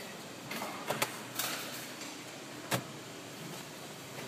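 A car's glove box being opened and a tire pressure gauge taken out: a few sharp clicks and knocks, the clearest about a second in and again near three seconds, with a short rustle between them.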